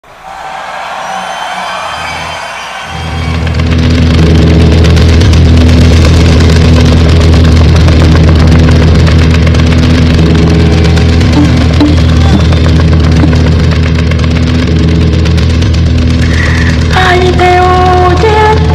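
Live band music at full volume: after a quieter opening, a sustained deep bass drone sets in about three seconds in and holds. A higher, sliding melodic line comes in near the end.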